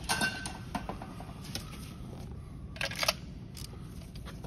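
Metal hand tools clicking and clinking as a socket on a long extension is handled and worked down into a spark plug well, with a short scraping rattle about three seconds in.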